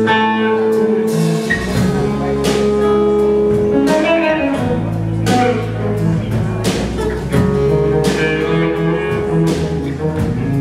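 Live band playing an instrumental passage: acoustic and electric guitars over a drum kit with cymbal crashes. Low bass notes come in about a second and a half in.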